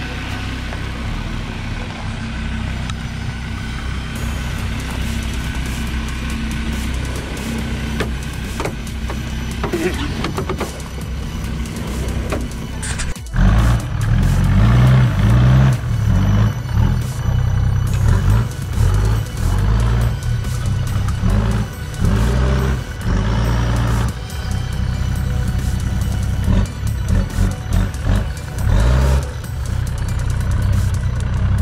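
Four-wheel-drive engines working up a steep, rocky track. First a ute's engine pulls steadily at low revs. After an abrupt cut about 13 seconds in, an 80-series Land Cruiser on 37-inch tyres is louder, its throttle rising and falling in surges as it crawls and climbs.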